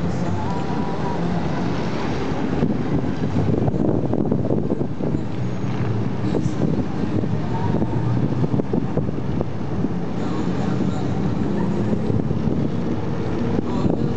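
Steady outdoor din of crowd voices and street traffic, with wind noise on the microphone.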